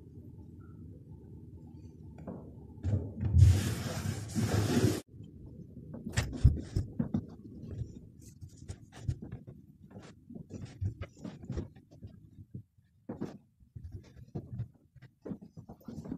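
A low steady hum, then a loud rushing noise for about two seconds that cuts off abruptly. After that come scattered knocks, thumps and rustles as a cloth bundle and floor cushions are lifted, carried and set down on the wooden bench and the floor.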